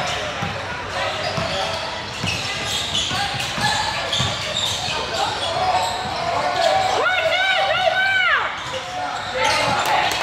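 A basketball dribbling on a hardwood gym floor, with the voices of players and onlookers echoing in the large hall. About seven seconds in comes a brief run of four high squeaks that rise and fall.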